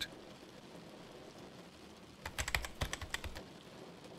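Fast typing on a computer keyboard: about a second of rapid keystrokes a little past halfway through, over a faint steady hiss.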